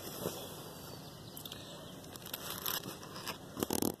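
Large zucchini leaves rustling and scraping as they are pushed aside by hand, close to the microphone, with scattered crackles that bunch up just before the end.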